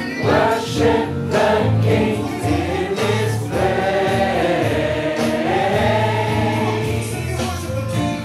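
A large amateur gospel choir singing together, with hand claps on the beat in the first few seconds, then holding a long chord.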